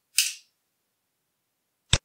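A short hissy burst about a quarter second in, then a single sharp computer mouse click near the end as a different program window is brought up.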